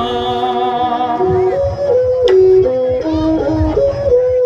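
Bassac theatre (lakhon basak) ensemble music: a melody moving in steps between held notes over low drum strokes, with a sharp clack a little over two seconds in.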